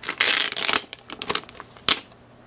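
Clear protective plastic film being peeled off the back of a tablet: a long loud rip in the first second, then scattered crinkles and a sharp crackle near the end.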